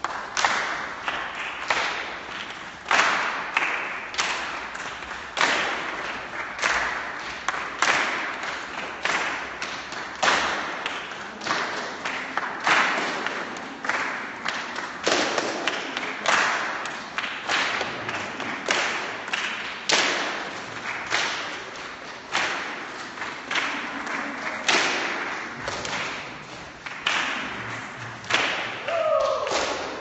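A large group clapping hands together in a steady rhythm, about two claps a second, echoing in a large bare hall.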